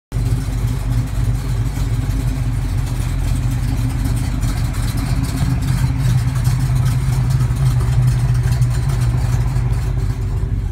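V8 engines of a 1970 Plymouth Road Runner and a 1971 Hemi 'Cuda idling steadily with a deep rumble.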